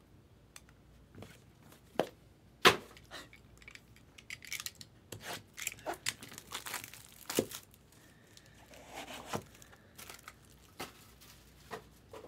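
Plastic wrap crinkling and tearing off a Topps Dynasty card box, mixed with sharp knocks of the cardboard boxes being handled and set down; the loudest knock comes about three seconds in.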